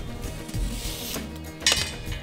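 Background music, with the soft rubbing rustle of a nylon webbing strap being undone from a gas cylinder about halfway through.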